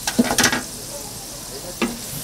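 Fish cakes sizzling steadily in deep-frying oil. A wire mesh strainer clatters against the steel frying pot in a quick run of knocks just after the start, and once more near the end.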